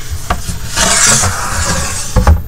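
A sheet of drawing paper being slid and turned on a drawing table: a few light knocks, then a loud rubbing swish of paper across the surface about a second in.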